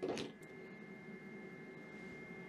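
BigBlue Cellpowa 500 LiFePO4 power station charging from the wall, its cooling fan running steadily and faintly with a thin, steady high electronic whine. A short handling noise comes right at the start.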